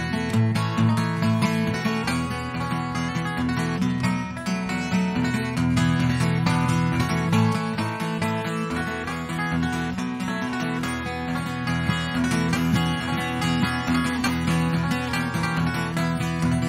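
Instrumental break in a country ballad: an acoustic guitar strummed in a steady rhythm, with no singing.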